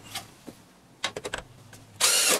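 A few light clicks and taps, most of them bunched together about a second in: handling noise as a cordless impact driver and screw are set against the aluminum hinge rail of the storm door.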